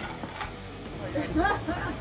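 A woman laughing in a few short bursts, about half a second in and again after a second or so.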